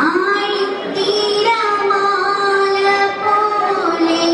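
A young woman singing solo into a hand-held microphone, holding long notes that bend gently in pitch.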